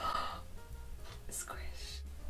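A woman's short, breathy gasp, then a quiet room with faint background sound.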